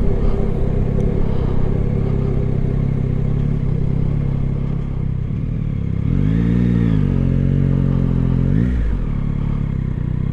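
Yamaha Tracer 9 GT's three-cylinder engine running at low road speed. About six seconds in its revs rise and fall quickly, then hold at a steady pitch before dipping briefly near the end.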